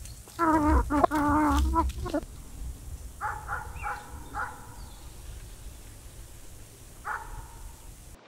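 Domestic hens calling: one long wavering call of about two seconds, then a run of four short clucks about three seconds in, and one more short call near the end.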